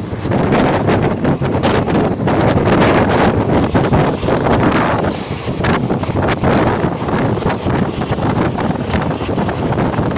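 Wind buffeting the microphone at the window of a moving passenger train, over the train's steady running noise.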